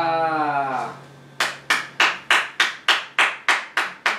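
Hand clapping in a steady, even beat, about three claps a second, starting about a second and a half in: applause at the end of a flamenco guitar and dance piece.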